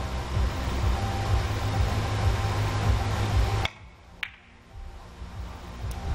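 Carom billiard balls clicking during a three-cushion shot: one sharp click about three and a half seconds in and another about half a second later. Before them runs a steady low rumble of hall ambience, which drops away at the first click.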